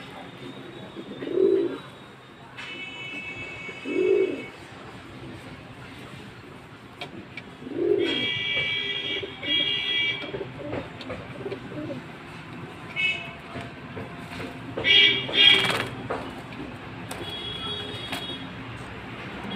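Pigeons cooing: low coos about a second and a half in, at four seconds and around eight seconds. Higher-pitched calls or tones come and go, and a couple of louder, sharper sounds come near the end.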